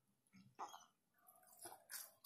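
Faint crackling of crispy fried chicken skin as it is torn apart by hand on its paper wrapper, in a few short bursts about half a second in and again near the end.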